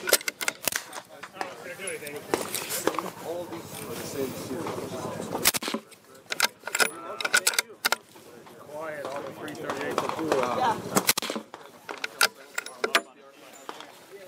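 Several sharp reports from a suppressed bolt-action rifle (a .338 fitted with a Silencer Central Banish 338 suppressor), spread through the stretch, with voices talking in the background.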